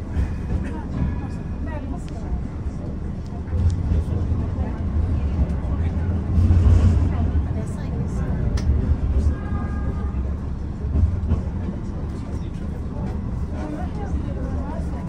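Istanbul tram running along its rails, heard from inside the car: a steady low rumble that grows louder around the middle, with voices in the car.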